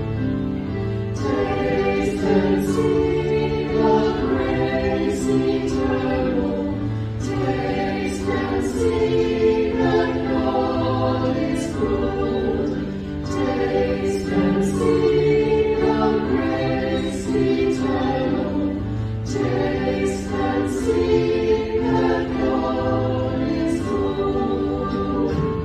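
Church choir singing a choral piece in several voices, phrase after phrase with brief breaths between.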